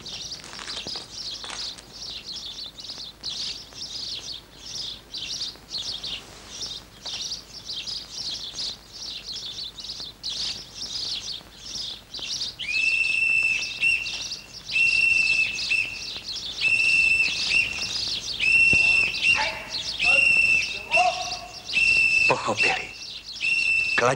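Birds chirping busily in many short, quick calls. From about halfway through, a clear, steady whistled note repeats about once a second, each note held for nearly a second.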